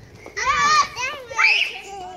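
Children's high-pitched voices calling out excitedly, in two short bursts: one about half a second in and another just past the middle.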